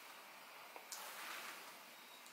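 Faint click and soft rustle of a hand turning the heavy cast-iron flywheel of a Huxtable Stirling hot air engine, which is not yet running, over a faint steady hiss.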